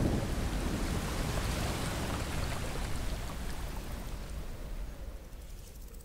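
Heavy rain with a low rumble of thunder, the downpour fading away gradually across the few seconds.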